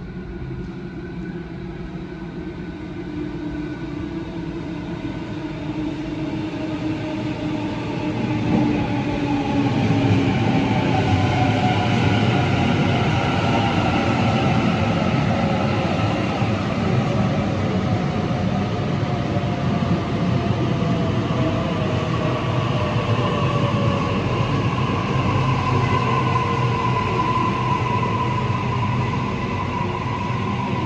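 Electric suburban passenger train running at a station platform. Its rumble builds over the first ten seconds and then holds steady, and several motor whines fall slowly in pitch as it slows.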